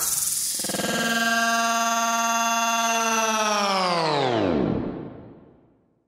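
A sustained electronic tone rich in overtones, held steady, then sliding steeply down in pitch about three and a half seconds in and dying away to silence, like a power-down or tape-stop sound effect.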